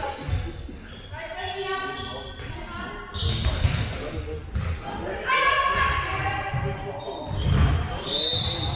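Handball bouncing on a sports hall floor, a series of dull thuds, the loudest near the end, mixed with players' shouts and calls in the large hall.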